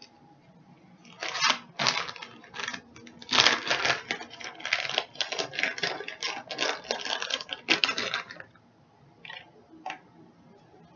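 Plastic bag of shredded cheddar cheese crinkling and rustling in quick irregular bursts for several seconds as the cheese is handled, then stopping.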